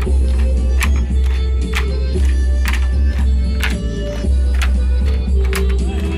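Traditional folk music with sharp, regular clacks about once a second: bamboo poles struck together to keep the beat of a bamboo-pole dance (múa sạp).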